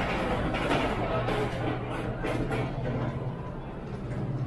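Indoor market hall ambience: background music with people's voices, over a steady low hum.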